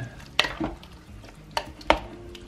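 A spoon stirring a chunky beef and vegetable stew in a slow cooker pot, with three sharp knocks of the spoon against the pot, the loudest near the end.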